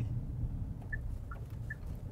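Steady low road and engine rumble inside the Chery Tiggo 8 Pro's moving cabin. From about a second in, a faint two-tone tick-tock of the car's hazard indicator sounds about three times a second; the hazards are switching on by themselves as the car detects an object ahead.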